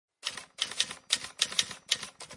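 Typing sound effect: a quick, uneven run of typewriter-style key clacks, starting a fraction of a second in.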